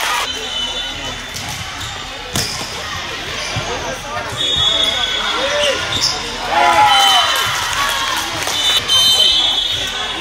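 Volleyball being played in a large gym: overlapping voices of players and spectators, three sharp slaps of the ball being hit, and a few short high squeaks.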